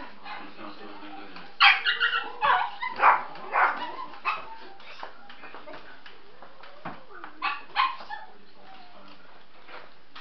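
Cotton de Tulear puppy barking and yapping in short bursts during play, a cluster of them a second or two in and a couple more near the end, with voices alongside.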